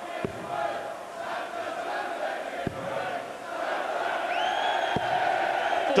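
Darts arena crowd chanting and singing together, growing louder about halfway through, with three faint knocks spread across it.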